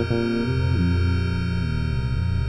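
Layered synthesizer music: a steady held high chord over a low synth line whose notes swoop down and back up in pitch three times.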